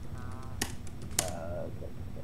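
A few computer keyboard keystrokes clicking, spaced irregularly, with a short spoken "okay, okay" about a second in.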